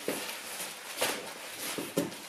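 Rustling and handling noise from rummaging through a large cardboard box of packaged goods, with a sharp rustle about a second in and another near the end.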